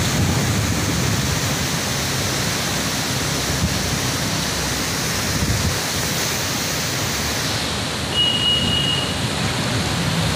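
Steady rushing noise of wind on the microphone over fast-flowing floodwater. A brief thin high tone sounds about eight seconds in.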